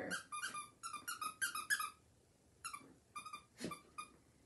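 Dogs playing with a squeaky toy: a quick run of about ten short, high squeaks in the first two seconds, then a few more near the end.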